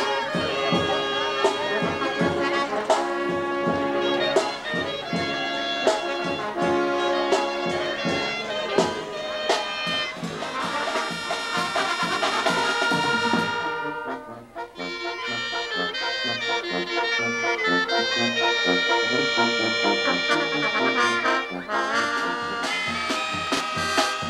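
Mexican brass band (banda) playing a lively tune, with trumpets and trombones over a steady bass-drum beat. The playing breaks off briefly about halfway through, then picks up again.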